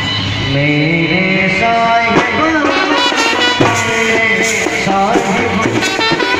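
Live Indian brass band music over a loudspeaker: a man sings a melody into a microphone, with brass and a few sharp drum hits behind him.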